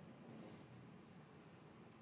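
Near silence: room tone, with one faint soft scratch about half a second in.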